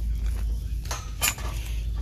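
Metal wire shopping cart clinking twice about a second in, the second clink ringing briefly, over a steady low rumble as the cart and the rugs in it are handled.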